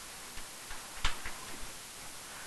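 A few light clicks and taps of a stylus on an interactive whiteboard, the sharpest about a second in, over a steady low hiss.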